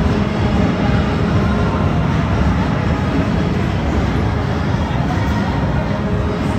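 Steel roller coaster train running along its track, a steady low rumble of wheels on the rails.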